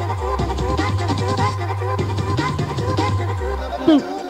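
Early-1990s hardcore rave music mixed by a DJ: a deep, steady bass line that drops to a lower note twice, under dense fast drums and pitched synth or sampled-vocal lines.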